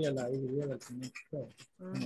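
Speech: a voice drawing out one long wavering vowel, as in a slowly stretched repetition of the word "tray" in a pronunciation drill, followed by a short syllable about a second and a half in.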